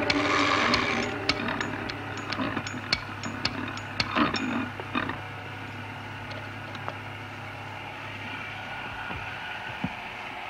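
Machine sound effect: a short burst of noise, then a run of sharp, irregular clicks for about four seconds, settling into a steady low hum.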